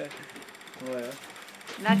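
A voice saying two short words over faint room noise, the second one "nada" near the end.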